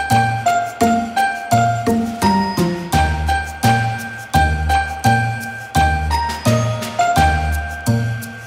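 Background music: a bell-like melody of short, quickly decaying notes over a steady beat with bass notes.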